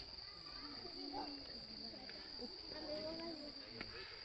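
A steady, unbroken high-pitched trill of night insects, with a crowd's voices murmuring underneath.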